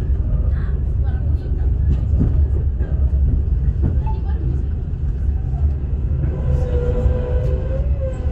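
KTM Tebrau Shuttle train running, heard from inside the carriage as a steady low rumble. A steady, slightly wavering whine joins about six seconds in.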